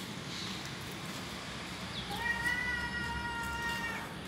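A domestic cat meowing once, a single long, level-pitched call of about two seconds starting about halfway through, over a faint steady hum.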